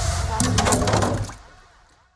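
A 28 gauge steel wire snapping under a bucket of water: sharp cracks and a clatter about half a second in, over a loud low rumble that dies away by about a second and a half in.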